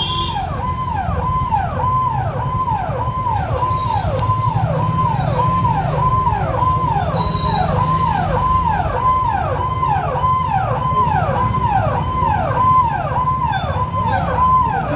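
Electronic police siren, each cycle dropping from a high note to a lower one and starting again a little under twice a second. Under it runs the steady low drone of motorcycle engines moving slowly in a column.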